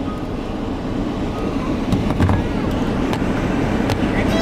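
Steady running noise of a car heard from inside its cabin, with a few soft knocks about halfway through.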